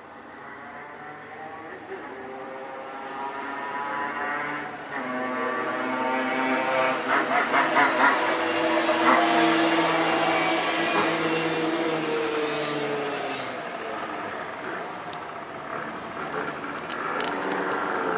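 Helicopter flying over: a steady drone of several pitches that grows louder for about nine seconds, then drops slightly in pitch as it goes by and fades.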